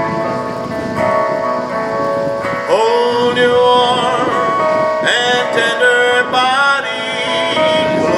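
A man singing a blues-pop song while strumming an acoustic guitar through a small amplifier, with two long held notes that waver with vibrato about three and five seconds in.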